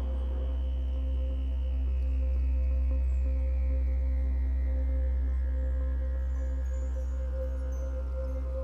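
Ambient background music: a deep steady drone with a held middle tone and a higher tone that slowly falls in pitch.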